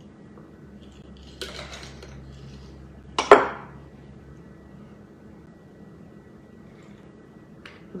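Glass jar of pumpkin seeds and its metal lid being handled: a short rattle of seeds about a second and a half in, then one sharp clink, the loudest sound, a little after three seconds. A faint steady low hum runs underneath.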